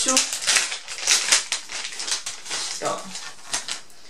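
Thin plastic packaging bag crinkling and crackling in a rapid, irregular run as it is pulled open by hand to get a small USB adapter out.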